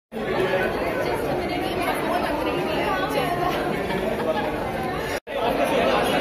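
Crowd chatter: many overlapping voices talking at once, cut off briefly about five seconds in before the babble resumes.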